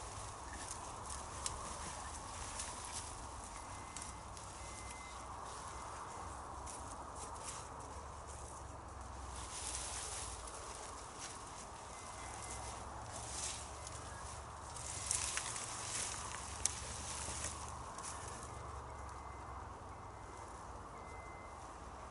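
Rustling and crackling of plant stems, foliage and soil being pulled up and handled by hand, in irregular small crackles with louder bursts of rustling about ten, thirteen and fifteen to seventeen seconds in.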